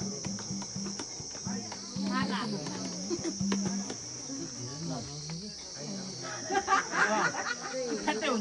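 A steady, high-pitched chorus of crickets, under people's chatter and laughter. The voices grow louder near the end.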